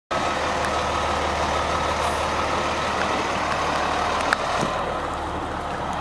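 Fire engine running steadily: a constant low engine hum under an even rushing noise, with a faint steady tone and a few light clicks.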